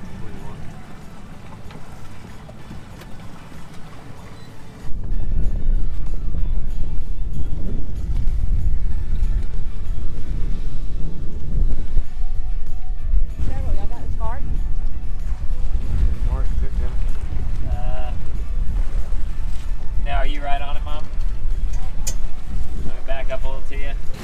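Heavy wind buffeting the microphone on a boat, a loud low rumble that starts suddenly about five seconds in, with faint voices breaking through it now and then.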